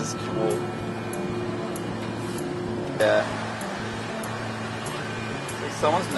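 Steady hum of rooftop air-conditioning condensers and machinery, with a held tone that stops about halfway through. A short voice sound cuts in at the same moment, and speech begins near the end.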